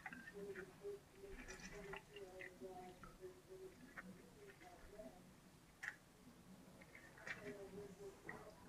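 Near silence: quiet handling as a lemon is squeezed by hand into a fine-mesh strainer, with a couple of faint ticks.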